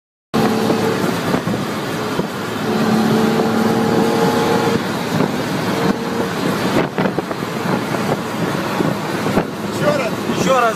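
Car cabin noise at highway speed: a steady rush of engine, tyre and wind noise, with a steady hum in the first half and a couple of short knocks later on.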